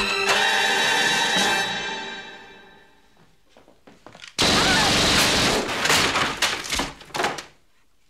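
Film score fading out over the first two to three seconds, then a sudden loud burst of bangs and thuds about four and a half seconds in, lasting about three seconds.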